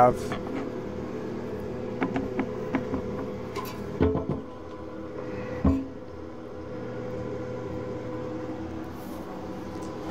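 Light clicks and a few knocks of plumbing parts being handled, over a steady background hum.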